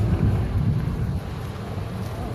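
Wind buffeting the phone's microphone: an uneven low rumble that eases off a little past the first second.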